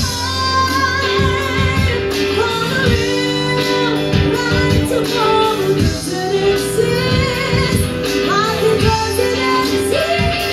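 Live band playing a song: a woman singing a melody with vibrato over electric guitar and a drum kit.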